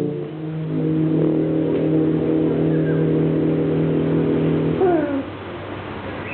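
Tuba and euphonium quartet holding a long sustained low brass chord, which stops about five seconds in. A short rising cry sounds just as the chord ends.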